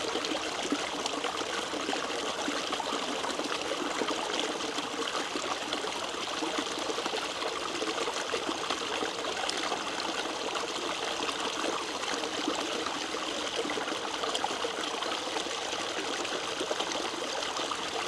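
Shallow stream water trickling and running steadily over stones.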